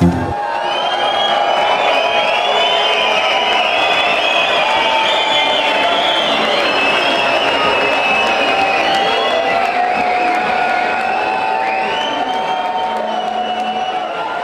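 A pounding techno beat cuts off right at the start, and a club crowd then cheers and whoops at a steady, loud level, with many high rising and falling shouts over the roar.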